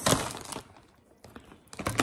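Plastic chip bag crinkling as it is picked up and moved, loud at first and fading to quiet about a second in, with a sharp crackle near the end.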